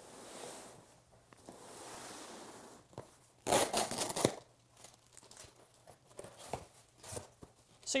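A large cardboard shipping box being handled and opened: soft scraping as it slides across a padded table, a loud rough tearing and rustling stretch about three and a half seconds in, then lighter rustles and taps of cardboard flaps and plastic wrap.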